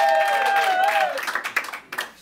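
Audience clapping in a small comedy club while one voice holds a single long drawn-out call; the call ends a little after a second in, and the clapping tails off near the end.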